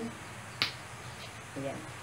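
A single sharp click about half a second in, from hands working a removable piece of a foam puzzle-mat body model.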